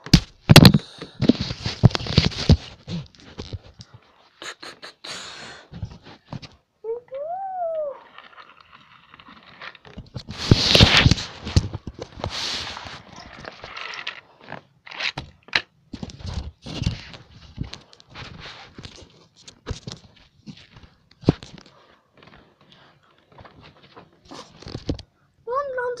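Plastic toy train track and toy trains being handled on carpet: scattered clicks, knocks and scraping, with short rustling bursts. A brief hummed note rises and falls about seven seconds in.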